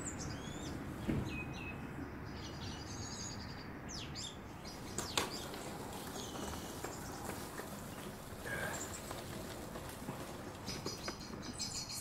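Birds chirping faintly over a low outdoor background hiss, with one sharp click about five seconds in.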